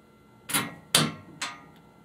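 Three sharp clicks as a hand tool pushes a quick nut down the threaded post of a gray quick corner, seating it into its locked position. The middle click is the loudest.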